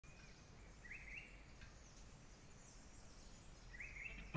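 Near silence: faint ambience with a few soft high chirps, about a second in and again near the end.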